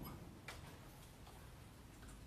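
Near silence with a few faint clicks and rustles as a choir stands up and takes up its sheet music; one sharper click comes about half a second in.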